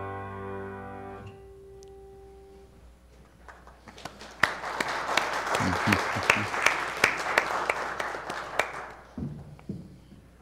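The last chord of a grand piano piece dies away and is damped about a second in. After a short pause the congregation claps for about five seconds, and the applause fades out near the end.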